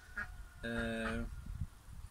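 A man's drawn-out, flat-pitched hesitation sound, "eee", held for about half a second in the middle, with a couple of short faint voice sounds just before it.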